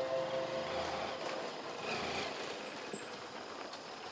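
Motorcycle engine running at low speed as the bike rolls slowly past, fairly faint against the open-air background.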